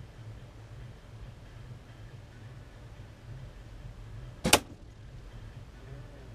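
A Win&Win recurve bow shot: one sharp crack about four and a half seconds in as the string is loosed and the arrow flies.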